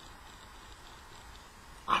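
A pause in a man's talk: faint steady background noise, with his voice starting again right at the end.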